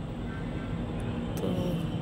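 Steady low rumble of outdoor background noise, with one short spoken word near the end.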